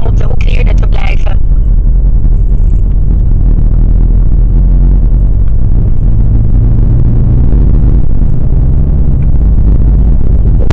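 Steady low rumble and hum of a car's engine and tyres while driving, picked up by a dashboard camera inside the car. A voice is heard for about the first second.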